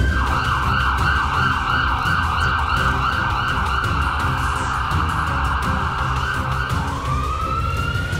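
Emergency vehicle siren in a fast yelp, sweeping up and down about three times a second, then switching to a slower rising wail near the end.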